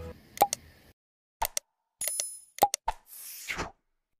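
Sound effects of a subscribe-button animation: a string of short clicks and pops, a brief bell-like ding about two seconds in, and a swish near the end.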